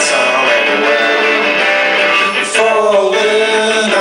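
Live rock band playing: electric guitars, bass and drums, heard thin with little low end. A cymbal crashes at the start and again about halfway through.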